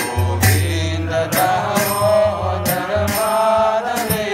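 A man chanting Sanskrit devotional prayers as a slow melody, holding long notes that glide between pitches, with short sharp strikes at intervals.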